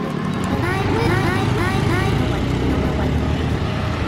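A small scooter engine running with a low, steady rumble as a Honda Scoopy rides along the road.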